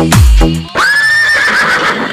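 Electronic dance remix with one heavy, booming bass kick, then the beat drops out and a horse whinny sound effect takes over about three-quarters of a second in: a high, wavering neigh that turns breathy and fades near the end.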